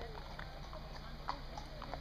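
Faint outdoor ambience: a low steady rumble with distant voices and a few short, irregularly spaced clicks.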